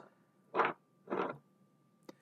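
Two short scraping sounds of a solderless breadboard, with its MPU6050 sensor module, being moved about on a wooden tabletop by hand. A faint steady whine sits underneath.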